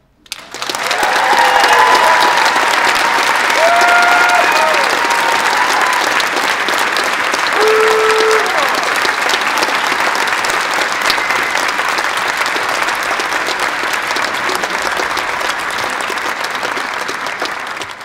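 A large audience applauding and cheering, with scattered high whoops and shouts during the first nine seconds or so. The applause eases off slightly near the end.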